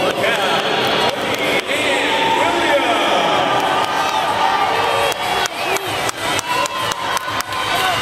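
Crowd of spectators cheering and shouting, many voices calling out over one another, with a run of sharp claps in the second half.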